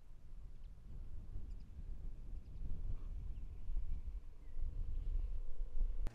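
Wind buffeting an outdoor microphone: an uneven, gusting low rumble that grows somewhat stronger, with a few faint high chirps.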